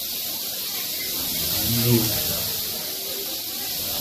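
Rattlesnakes rattling: a continuous high, hissing buzz that holds steady without a break.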